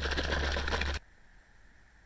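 Rapid clattering and rubbing right against the microphone over a low rumble, cutting off abruptly about a second in; faint soft handling noises follow.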